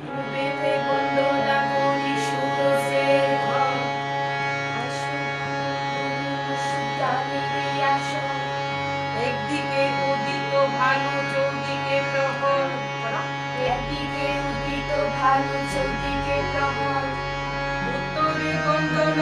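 Harmonium playing sustained chords and melody while a woman sings a Bengali Gajan folk song, with occasional sharp percussion strokes.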